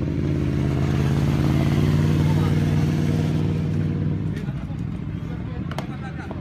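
A motor vehicle engine running at a steady pitch, growing louder to a peak about two seconds in and fading away after about four seconds, like a vehicle driving past.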